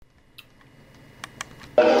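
Faint live-stage background with a few light clicks, then a man's amplified voice begins speaking near the end.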